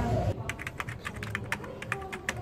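A quick, irregular run of light clicks and taps, like typing on a keyboard.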